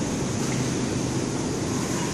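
Steady rushing noise of a supermarket's background din, picked up by a handheld phone microphone.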